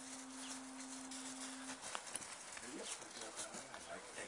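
Two dogs, one a Briard, playing in the snow and vocalizing in short, wavering sounds from about two and a half seconds in. A steady hum runs for the first two seconds and then stops.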